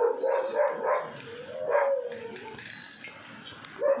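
A pet dog giving two drawn-out, whining barks in the first two seconds, then quieter, while waiting to be fed.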